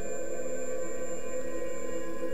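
Background music: a steady, dark ambient drone of several held tones, without beat or change.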